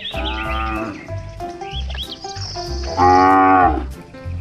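Cattle mooing: two long calls, the second one louder, about three seconds in, over background music with a steady beat.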